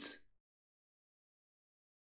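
Digital silence, after the tail of a man's spoken word that fades out in the first fraction of a second.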